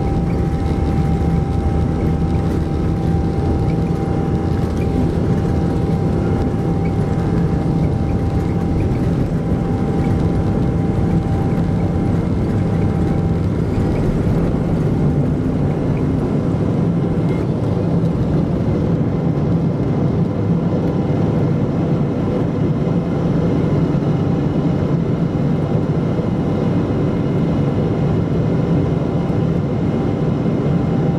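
Boeing 777-200 jet engines at takeoff thrust, heard inside the cabin: a loud, steady rumble through the takeoff roll and climb-out, with a thin whine that fades out about halfway through.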